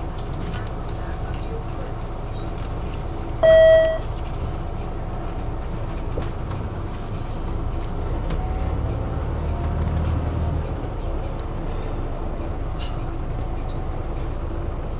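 Steady low rumble of a city bus heard from inside the cabin, with one short, loud electronic beep about three and a half seconds in. Around the middle the low running note swells for a couple of seconds, then settles again.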